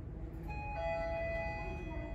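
Mitsubishi elevator's electronic arrival chime: two ringing notes, a higher one about half a second in and a lower one just after, both sustained for over a second. A steady low hum runs underneath.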